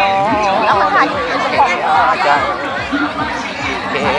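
A phrase of Mường folk singing with a wavering pitch ends about half a second in. Several people talking and chattering follow.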